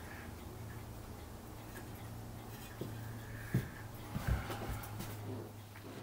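Quiet room with a steady low hum, and a few faint clicks and taps of small parts and a metal tin being handled on the bench, mostly past the middle.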